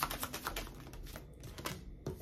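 Tarot cards being shuffled by hand: a quick run of small card clicks that thins out and fades after about the first second.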